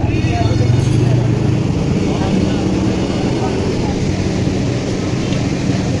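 Busy street ambience: a steady rumble of traffic and engines with indistinct chatter of passers-by.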